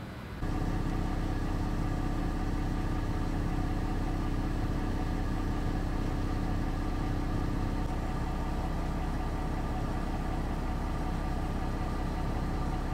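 A vehicle engine idling steadily, a constant even hum that starts abruptly about half a second in.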